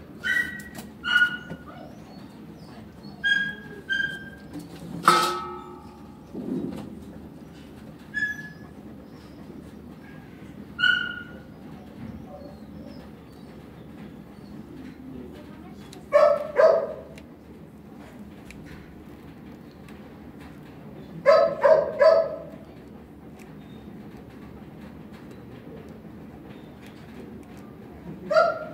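Dogs barking: a single bark about five seconds in, two barks around sixteen seconds, and a quick run of four barks around twenty-one seconds. Short high-pitched yips are scattered through the first eleven seconds.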